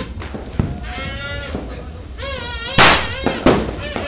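Firecrackers going off: two loud, sharp bangs about two-thirds of a second apart in the second half, amid drawn-out wavering pitched tones.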